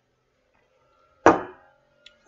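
A single sharp knock about a second in, with a short ringing decay: a drinking cup being set down on a desk.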